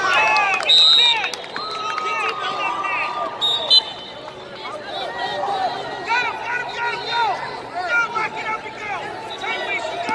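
Coaches and spectators shouting at a wrestling bout, several voices calling out over each other. A short high tone cuts through briefly about a second in, and again more faintly around three and a half seconds.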